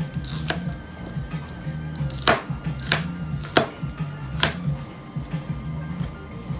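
Chinese cleaver chopping shredded red cabbage on a plastic cutting board: about five sharp, unevenly spaced chops, the loudest in the middle of the stretch.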